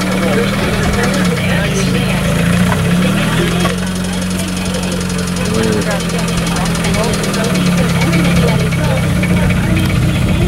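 Race car engine idling steadily, a low drone that wavers slightly in pitch, with people talking over it.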